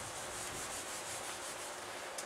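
Whiteboard eraser rubbing across a whiteboard, wiping off marker writing.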